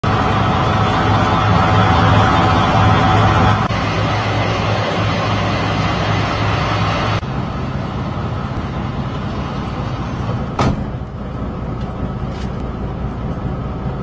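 Steady hum of an idling semi-truck diesel engine, which changes abruptly twice. There is one sharp click about ten and a half seconds in.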